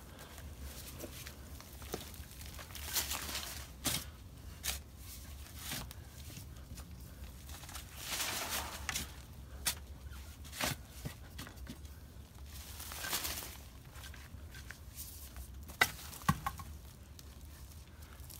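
Shovel digging and mixing clay soil and gravel in a planting hole: irregular sharp clicks of the blade striking stones, between a few longer scraping strokes.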